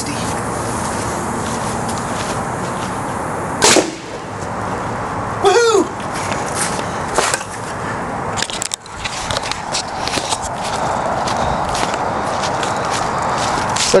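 Homemade quick-exhaust-valve pneumatic potato gun charged to about 60 psi firing once: a single sharp bang about four seconds in, over a steady background hiss, with small clicks afterwards.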